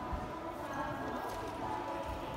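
Faint knocks from parallel bars as a gymnast swings from a handstand, over a background of distant voices in a large gym hall.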